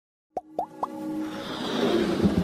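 Synthesized logo-intro sound effects: three quick popping blips about a quarter second apart, each a fast upward glide in pitch, then a swelling whoosh with held tones that grows steadily louder.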